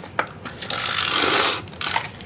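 Handheld adhesive tape runner pressed onto paper and drawn along its edge: a short click, then about a second of scratchy rolling noise as the tape is laid down.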